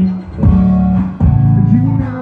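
Live band playing: electric guitar over bass and drums, with two drum hits, about half a second in and just after a second.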